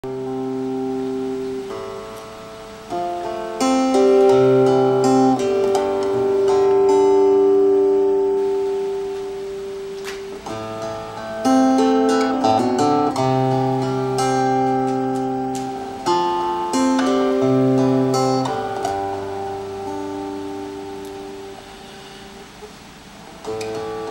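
Solo acoustic guitar playing the instrumental intro of a slow song: strummed chords that ring out and change every second or two.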